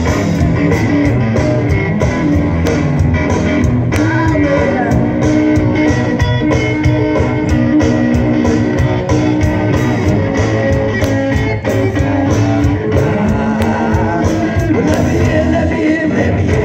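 Live blues-rock band playing loudly: semi-hollow electric guitar over a steady drum-kit beat, heard from among the crowd.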